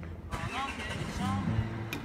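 Street cello playing, its low notes partly covered near the start by a rush of traffic noise and nearby voices, then clearly sounding again from about halfway through.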